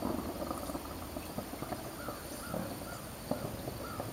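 A bird calling outdoors in a quick series of short, arched notes through the second half, over a faint steady trilling of insects.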